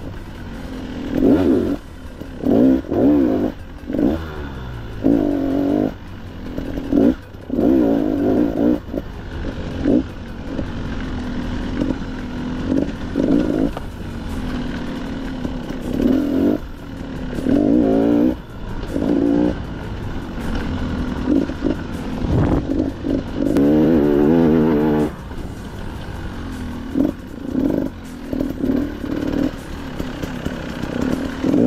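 Dirt bike engine ridden hard through tight turns: the throttle is snapped open and shut again and again, so the pitch rises and drops in short bursts, with one longer rev held a little past three-quarters of the way through.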